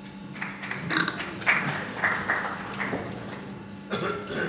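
A short round of audience applause that starts just after the start and dies away near the end.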